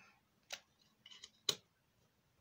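Two short sharp clicks about a second apart, the second louder, with a faint rustle just before it: tarot cards being handled and set down.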